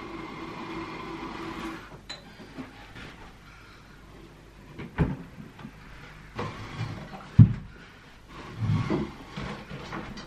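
Knocks and thumps of office furniture being moved and set down as a desk is shifted into place. There is a scraping rumble at first, then a sharp knock about five seconds in, and the loudest thump a couple of seconds later.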